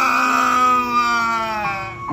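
A person's acted wail of grief: one long drawn-out cry whose pitch sinks slowly before it breaks off near the end.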